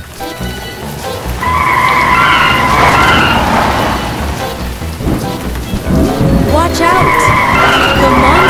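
Cartoon car sound effects: an engine running and tyres squealing in two long bouts, over rain and background music.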